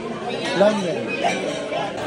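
Indistinct chatter of several voices talking over one another in a large room.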